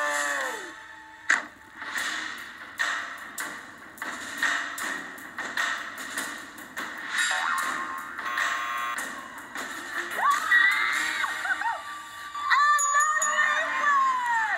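Television broadcast audio played through a TV speaker: background music under a run of sharp thuds from footballs being kicked, the loudest about a second in. Voices shout and cheer near the end.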